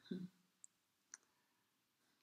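Near silence with a woman's brief low hum of voice at the start, then two faint clicks about half a second apart.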